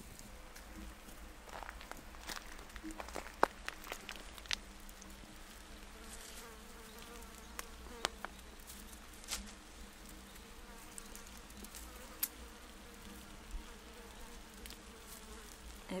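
Flying insects buzzing steadily, with scattered sharp clicks and snaps.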